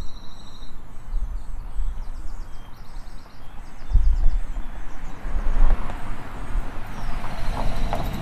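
Outdoor-sounding recording of a low rumble with faint high chirping. From about five seconds in, a run of rhythmic clopping knocks comes in.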